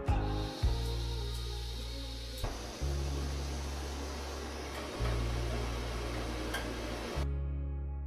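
Background guitar music with steady bass notes, over the steady hiss of a gas canister stove burner that grows fuller about two and a half seconds in and cuts off abruptly near the end.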